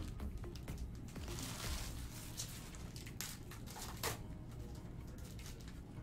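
Trading cards being slid and flipped by hand, with short rustles and clicks, over quiet background music.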